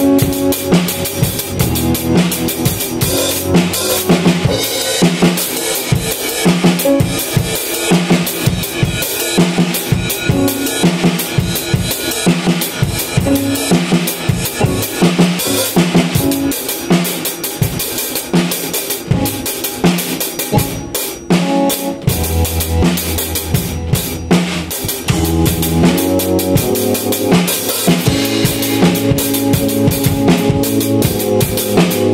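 Pearl drum kit played in a steady groove of kick, snare and cymbals, with a keyboard holding chords alongside. The sound thins for a moment about two-thirds of the way through, and then the keyboard adds deep sustained bass notes under the drums.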